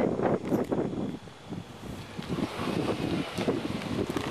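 Wind buffeting a handheld camera's microphone as a low rumbling rush, easing about a second in and building again toward the end.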